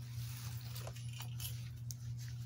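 Faint rustling and rubbing of hands being handled and wiped near plastic bags, with a few light clicks, over a steady low hum.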